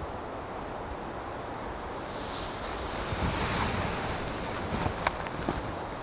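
Steady wind noise. A soft hiss swells about halfway through, and there is a single sharp click near the end.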